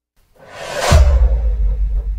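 Edited-in transition sound effect: a whoosh swells up from silence and lands, about a second in, on a deep bass boom that hangs on and fades, the kind of hit used for a logo reveal.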